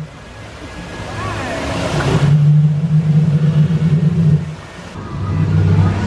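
Hissing fog-mist jets and splashing artificial waterfalls around an animatronic crocodile, the hiss strongest for the first two seconds. Under it a loud low rumble swells about two seconds in, drops away briefly and comes back near the end.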